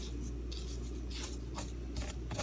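Dry shredded kunafa (kataifi) pastry strands rustling and scraping on a cutting board as a gloved hand pulls and spreads them, in a few short scratchy brushes.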